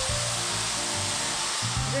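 Mushrooms and carrot sizzling as they are stir-fried over high heat in a pan until they wilt, with background music playing under the steady sizzle.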